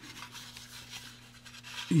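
Faint rubbing and handling of a hard plastic model car body as it is turned over in the hands, over a low steady hum.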